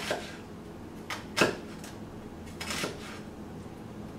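Chef's knife cutting into an onion and knocking on a wooden cutting board: a few separate knocks, the loudest about one and a half seconds in.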